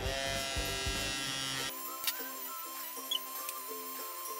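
Juvalips electric lip-plumping device's small suction pump buzzing with a steady whine while pressed to the lips; it cuts off suddenly about a second and a half in. Background music with plucked notes plays throughout.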